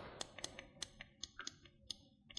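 Faint, scattered plastic clicks and taps as a small portable blender bottle is handled, about eight to ten light ticks in two seconds.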